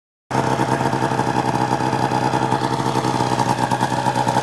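Arctic Cat ZR 600 snowmobile's two-stroke twin engine idling steadily, with a fast, even flutter.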